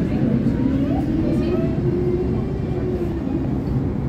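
Tram running along street rails, heard from inside the car: a steady low rumble, with a faint hum that rises slightly in pitch and fades near the end.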